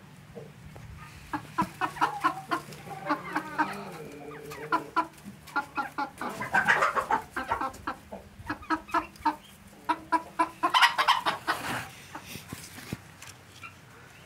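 Sebright bantam chickens clucking in a long run of short calls, loudest in a burst about halfway through and another toward the end.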